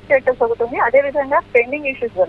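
Only speech: a woman reporting in Telugu over a telephone line, her voice thin and cut off at the top like phone audio.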